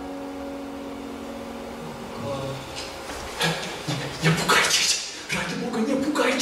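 The last piano chord dies away, then comes a brief scuffle: clothing rustling and sharp breaths, with low muffled vocal sounds, as a man seizes a seated woman and clamps his hand over her mouth.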